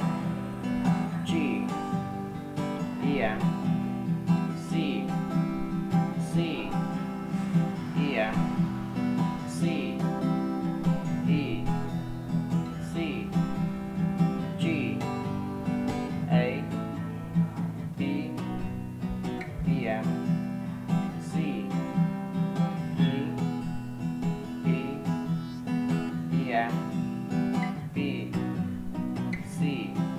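Steel-string acoustic guitar with a capo, strummed in a steady rhythm through a chord progression.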